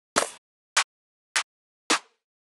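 Clap one-shot samples from a trap drum kit, auditioned one after another: four short, sharp clap hits about half a second apart, each a slightly different clap.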